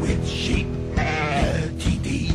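Hard rock band playing a sheep-themed parody song, with a sheep's bleat about a second in that wavers in pitch for about half a second.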